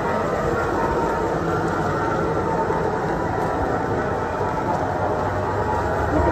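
Diesel engine of a 2009 Bandit 150XP wood chipper running steadily at an even speed.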